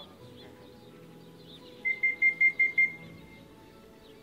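Six quick high-pitched electronic beeps in a row, starting about two seconds in and lasting about a second; they are the loudest sound here. Small birds chirp faintly throughout.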